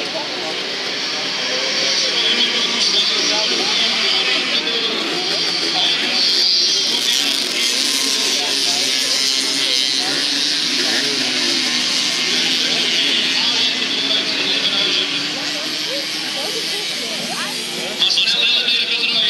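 Several racing mopeds' small two-stroke engines buzzing and revving together, their pitch rising and falling as they race and pass one another.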